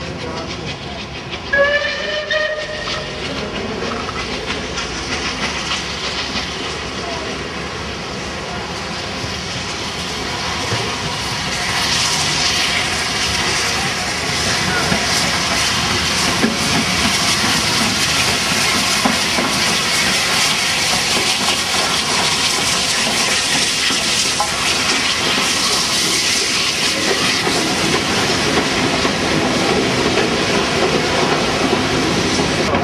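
SR Battle of Britain class 4-6-2 steam locomotive 34067 Tangmere sounds a short whistle about two seconds in, then runs through the station with its train. The hiss and rumble grow louder about twelve seconds in as the engine passes, and the coaches then clatter by.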